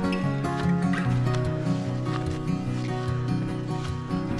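Background music with sustained chords and a steady beat.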